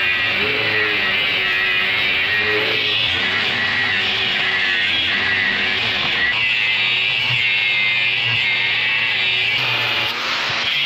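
Handheld angle grinder running steadily as it cuts into a steel bar held in a vise, under background guitar music.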